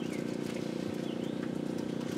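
A steady low electrical hum and buzz with a faint regular pulsing, and a brief faint bird chirp about a second in.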